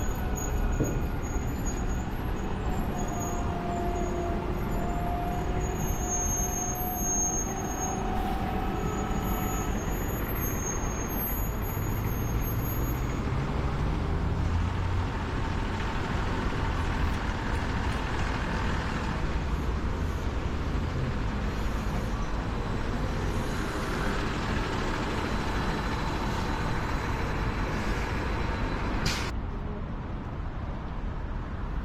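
City street traffic: a steady din of road noise and engines. Around the middle, a heavy vehicle's engine rises in pitch as it pulls away.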